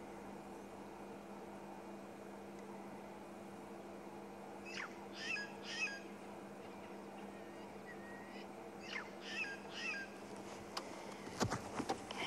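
Wild birds calling in two short bouts of quick, falling whistled notes, about five seconds in and again about nine seconds in, over a steady low hum. A brief low rumble comes just before the end.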